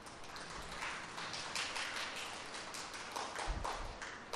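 Faint background noise during a pause in speaking, with scattered soft taps and rustles and a brief low bump near the end.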